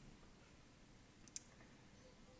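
Near-silent room tone with one short, sharp click about one and a half seconds in: a calculator key being pressed.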